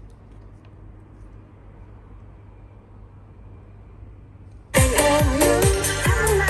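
A low, quiet hum, then about four and a half seconds in electronic dance music starts abruptly and loud on an Onkyo mini hi-fi system, a compact receiver driving small satellite speakers and a subwoofer, with a repeating bass beat. It is a sound test of the system.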